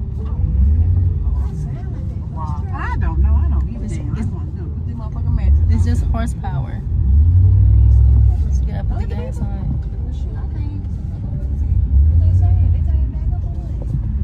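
Pickup truck engine idling with a low rumble, heard from inside the cab, with indistinct voices over it at times.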